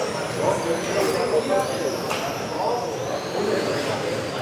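Radio-controlled electric touring cars racing round an indoor track, their motors making a high whine that rises and falls as the cars speed up and brake through the corners, with voices in the hall behind.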